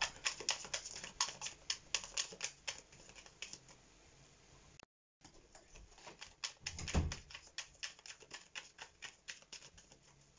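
Tarot cards being shuffled by hand: a quick, uneven run of light card clicks and flicks, with a brief break around the middle and a soft thump about seven seconds in.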